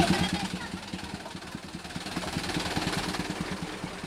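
Mitsubishi Fuso Colt Diesel truck's four-cylinder diesel engine running steadily at low revs, with a rapid, even beat.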